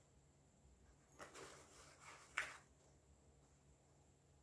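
Near silence, with faint rustling of a 5.11 Push Pack shoulder bag as fingers dig in its pocket, and one short soft noise about two and a half seconds in.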